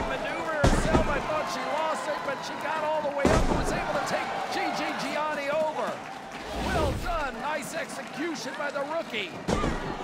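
A wrestling ring thudding under heavy body impacts, four deep thumps a few seconds apart, under a crowd shouting and cheering.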